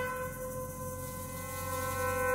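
Concert wind band holding a sustained chord of brass and woodwinds, which softens after its entry and then gradually swells louder.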